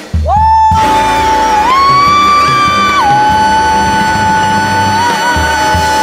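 Closing bars of a big-band jazz arrangement: one long high note held out, stepping up in pitch partway through and back down, with a slight waver near the end. Drum and bass hits sound under it at the start and again near the end.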